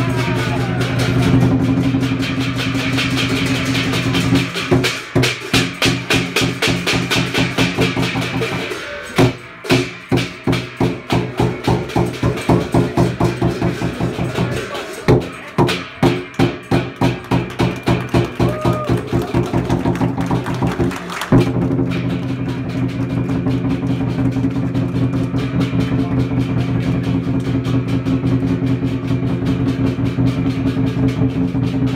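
Chinese lion dance percussion, drum with clashing cymbals. It starts as a dense continuous roll, breaks into separate loud beats about two to three a second with a couple of short pauses, and settles back into a steady roll for the last third.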